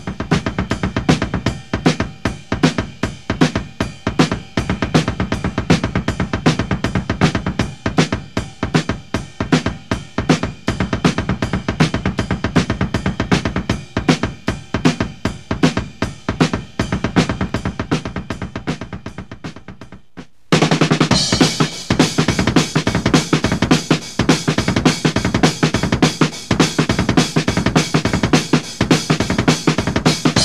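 Drum kit with two bass drums playing an eighth-note triplet roll: the two bass drums alternate in a continuous triplet stream under a quarter-note ride cymbal and a snare backbeat on 2 and 4. About two-thirds of the way through, the sound cuts out for a moment and a brighter-sounding passage of triplet beats and fills on the kit begins.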